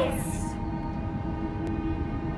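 A low, steady rumbling drone with faint held tones, and a short hiss right at the start.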